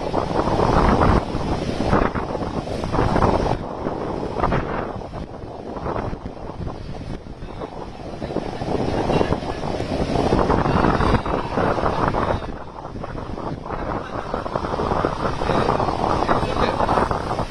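Heavy surf breaking on a beach in a sea made rough by an approaching cyclone, with strong wind buffeting the microphone. The sound rises and falls in surges every few seconds.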